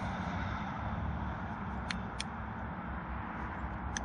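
Two pairs of quick small clicks, about two seconds in and again near the end, from the on/off switch of a solar spotlight being flipped, over a steady low background rumble.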